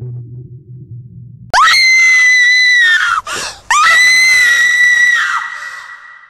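A young woman screaming in terror: two long, very loud, high-pitched screams, starting about a second and a half in, with a sharp gasping breath between them; the second scream fades away at the end.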